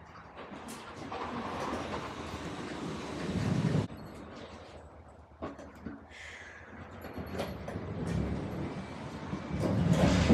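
Manual pallet jack carrying a loaded pallet, rolling and rattling over the wooden plank floor of a box truck. The rumble builds and stops about four seconds in. There is a single knock a moment later, then the rolling starts again and grows louder toward the end.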